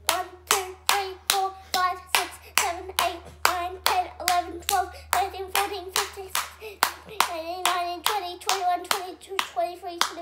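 A child clapping his hands in a long, even run of sharp claps, nearly three a second, counting each clap aloud in a sing-song voice as he goes.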